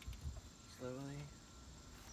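Insects trilling: a thin, steady high-pitched tone that holds without a break, under a single short spoken word.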